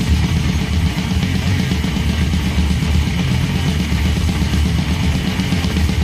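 Heavy metal band recording: distorted electric guitars and a drum kit playing at a steady, loud level.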